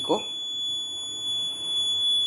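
Piezo alarm buzzer on an accident-detection circuit board sounding one steady, unbroken high-pitched tone: the accident alarm has been triggered.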